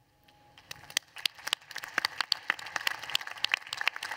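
Audience applause, the clapping setting in under a second in and quickly building to a dense patter of hand claps.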